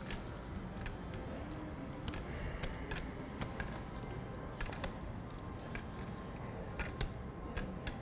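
Poker chips clicking as players handle and riffle their stacks at the table: an irregular run of short, sharp clicks over a low, steady room background.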